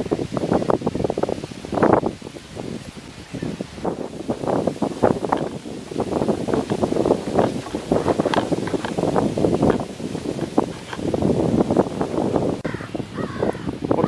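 Wind rustling leaves in irregular, uneven gusts.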